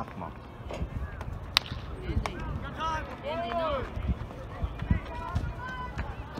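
One sharp crack of a baseball bat hitting a pitched ball, about a second and a half in, followed by spectators shouting.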